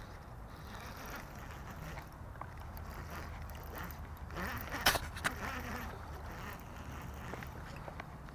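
Baitcasting reel being cranked to bring in a small hooked bass, over a low steady rumble. There is a sharp click about five seconds in.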